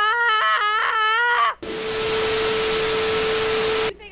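A child's voice wailing with a wavering, drawn-out pitch, like mock crying, for about a second and a half. It is then cut off by a loud burst of static-like hiss with a steady tone underneath, which stops abruptly just before the end.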